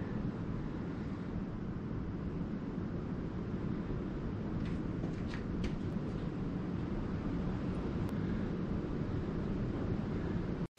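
Steady low background rumble, with a few faint light clicks about halfway through from small engine parts being handled.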